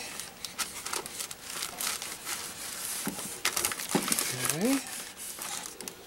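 Clear plastic laminating film crinkling and crackling, with many small clicks, as it is worked down over a foam tail surface with a covering iron.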